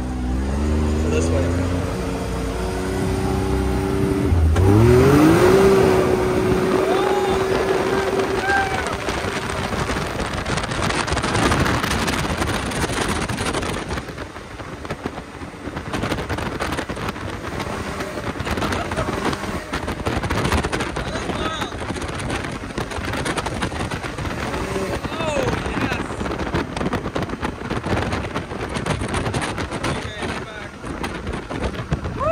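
Turbocharged three-cylinder engine of a Can-Am Maverick X3 XRS side-by-side accelerating hard: its note sweeps up in pitch about four seconds in and holds high until about ten seconds in. After that, wind rush across the open, windshield-less cab covers most of the engine sound.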